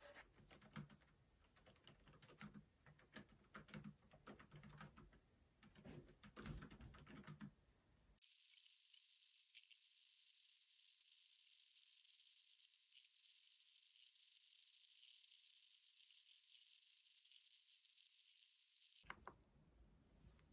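Faint typing on a laptop keyboard: a quick run of soft key clicks. About eight seconds in it gives way to a steady thin hiss with only the odd click.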